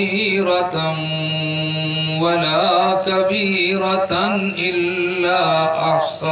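A man chanting Quranic verses in Arabic in the melodic tajweed style, holding long notes and ornamenting the pitch with rising and falling turns between them, amplified through a microphone.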